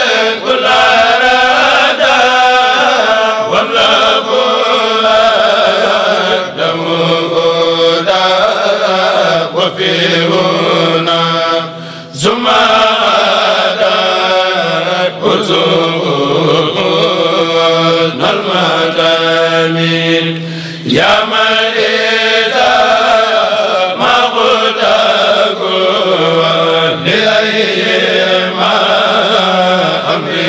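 A kourel, a group of men, chanting Arabic khassida verses together in a steady, melodic chant, with two short breaks between lines about 12 and 21 seconds in.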